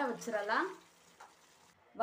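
A woman's voice speaking briefly for less than a second, then near silence.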